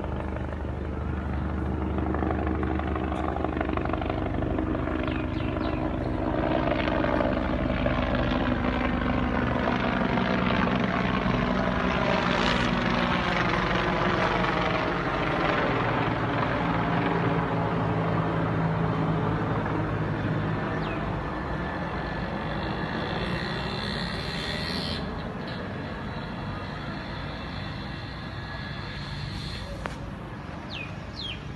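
An aircraft flying overhead: a steady engine drone that grows louder over the first several seconds, is loudest around the middle, and slowly fades away.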